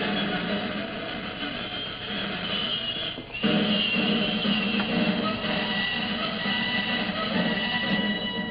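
Title music from an old film's opening credits, played back from a computer and heard through its speakers in the room, with a short break a little over three seconds in.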